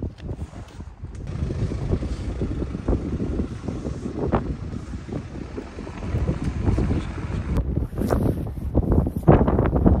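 Wind buffeting the microphone in a rough low rumble, over a car running close by.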